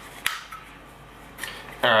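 A sharp click about a quarter second in and a fainter one later, from hands tugging at the plastic cable cover on a power wheelchair's joystick mount arm, which stays stuck.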